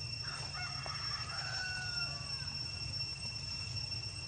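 A rooster crowing once, a call of about two seconds that ends in a long held note falling slightly at the close, over a steady high drone of insects.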